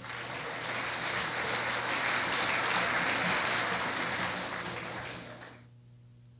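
A lecture-hall audience applauding, the clapping steady and then dropping away quickly near the end.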